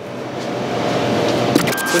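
A rising whoosh transition sound effect: a noise swell that builds steadily for about a second and a half, then breaks into a few quick glitchy clicks and cuts off.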